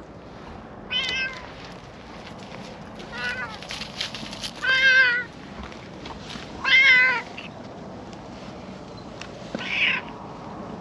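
Orange-and-white cat meowing five times as it approaches, short calls a second or two apart with a wavering pitch, the two in the middle loudest and longest.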